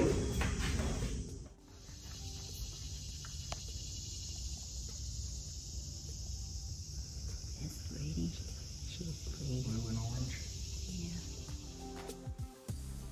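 A voice fades out in the first second and a half, then a steady high-pitched outdoor hiss of insects, with faint low sounds now and then.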